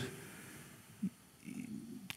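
A pause in a man's speech at a microphone: faint room tone, with a brief low sound about a second in and a soft low murmur in the second half.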